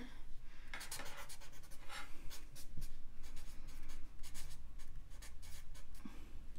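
Felt-tip marker writing on paper in many short, scratchy strokes.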